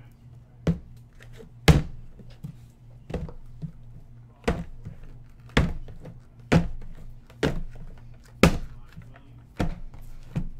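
Sealed cardboard hobby boxes of trading cards set down one at a time onto a stack on a desk: about nine dull thunks, roughly one a second.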